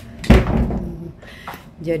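A mirrored hotel door swung by hand, hitting with a heavy thud about a third of a second in, then a lighter click about a second later.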